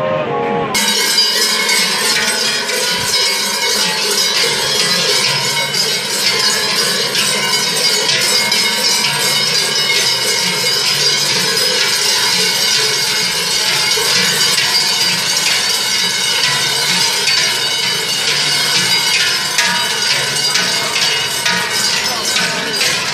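A moment of guitar music cuts off, then the brass crotal bells and large cowbells worn by a group of Silvesterkläuse jangle continuously as the wearers rock and sway, many bells ringing at once.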